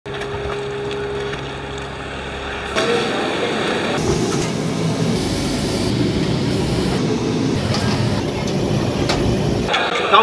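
Restaurant kitchen noise: a steady machine hum for about the first three seconds, then a loud, steady rushing roar, the kind that comes from kitchen burners, steamers or extraction, running to near the end.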